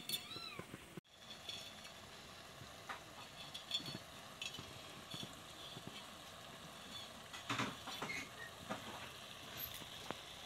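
A cat meows briefly in the first second, a short call that rises and falls in pitch. After an abrupt cut, there are faint scattered clicks and light stirring and handling noise.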